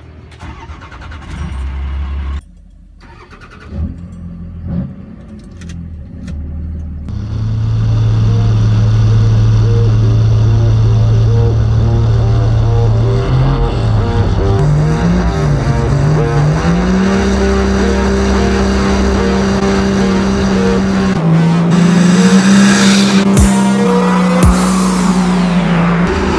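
Cummins turbo-diesel Dodge truck engines in burnouts, quieter at first, then about seven seconds in held at high revs with a steady pitch that wavers and steps higher twice. Tire squeal hisses from the spinning tires, loudest near the end.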